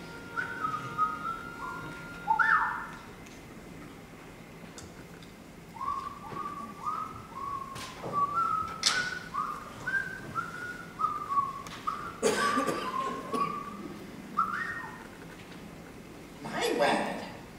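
A person whistling a simple tune of short notes, each sliding slightly up, in two phrases with a pause of about three seconds between them. A few brief knocks or rustles come during the second phrase.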